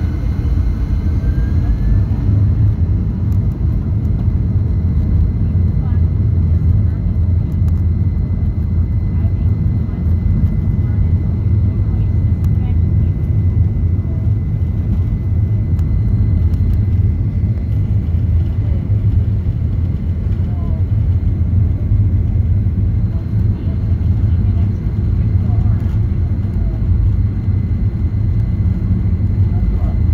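Boeing 737 jet engines heard from inside the passenger cabin as the airliner taxis onto the runway and begins its takeoff roll: a loud, steady low rumble with a faint steady whine above it, and a whine rising in pitch over the first couple of seconds.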